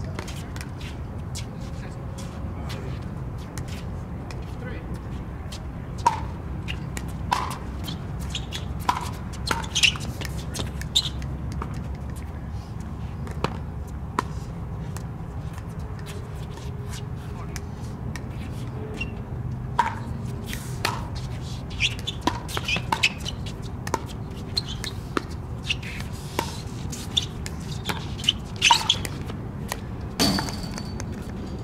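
Pickleball paddles hitting a plastic pickleball in two rallies of sharp short pops. The first has about five hits a few seconds in; the second is a longer run of hits from about two-thirds of the way through to near the end. A steady low rumble runs underneath.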